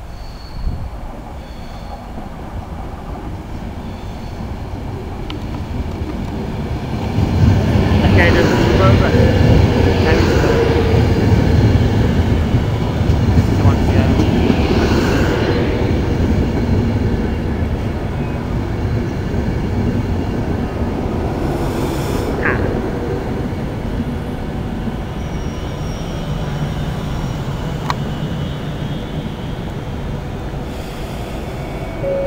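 A Virgin Trains Class 390 Pendolino electric train running into the platform: its rumble builds over several seconds and is loudest as the leading coaches come alongside. The sound then eases gradually as the train moves slowly past.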